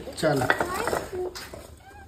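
A voice says a short word, followed by a sharp knock about a second and a half in, as a small child handles a wooden rolling pin (belan) on a woven stool seat.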